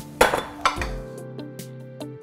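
Stainless steel pot lid clanking against cookware as it is lifted off the pot, two ringing metal clinks in the first second, then background music.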